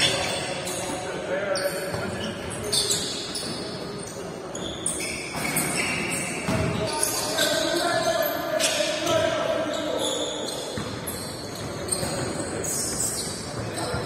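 Basketball practice in a gym: basketballs bouncing on the hardwood court in repeated sharp thuds, with players' distant voices echoing in the hall.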